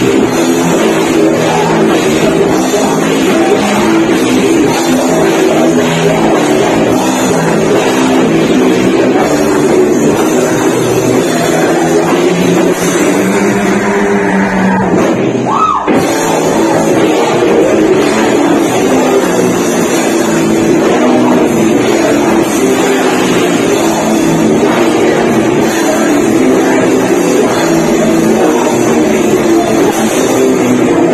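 Live heavy metal band playing loud and dense, with electric guitars and drums. About halfway through, a high pitch glides up and back down over the music.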